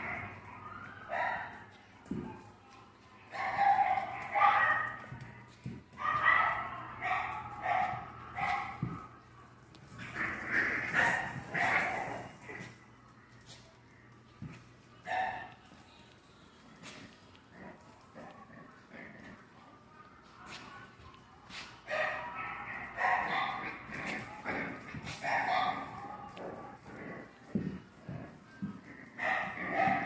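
Several puppies yapping and growling in play as they wrestle, in bursts, with a quieter stretch in the middle and scattered light clicks.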